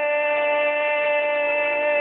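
Recorded country song: a voice holds one long, steady note on the last word of the line, with the backing music under it.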